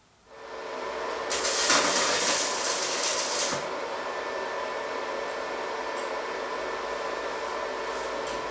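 Arc welding on a steel-tube frame: the arc strikes about a quarter second in and sizzles and crackles steadily, loudest and hissiest between about one and three and a half seconds in.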